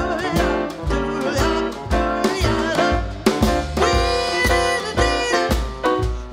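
Jazz trio playing an instrumental swing passage: grand piano over a steady, regular bass line and drums.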